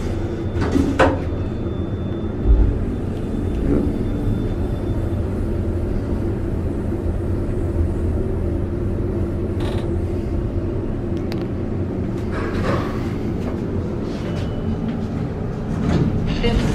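Schindler-modernized traction elevator car travelling down, a steady low rumble of ride noise with a hum under it, broken by a few clicks and knocks from the car.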